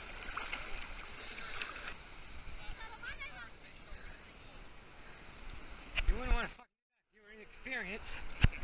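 Water sloshing and gurgling close around a GoPro action camera held at water level. Near the end a person's voice calls out loudly and briefly, and the sound cuts out dead for about half a second.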